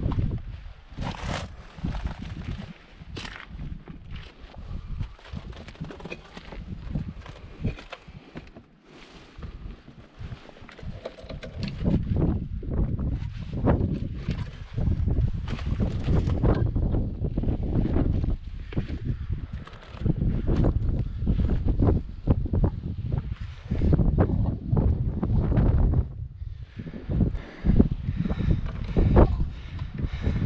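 Wind buffeting the camera microphone in gusts, getting stronger about twelve seconds in, with scattered footsteps and the rustle of clothing and pack as someone hikes over rocky, brushy ground.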